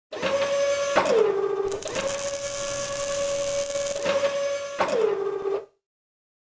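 Sound-effect whine of robot arm servo motors, a steady mechanical hum. Its pitch drops with a click about a second in, rises back up with a hiss through the middle, and drops again with a click near the end before cutting off suddenly.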